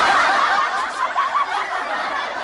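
Several people laughing and snickering together, many overlapping laughs at a fairly even level.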